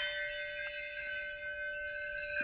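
Struck metal percussion ringing out after a strike just as the sound begins, holding two clear steady bell-like tones, one middling and one higher, over a fading shimmer of high overtones.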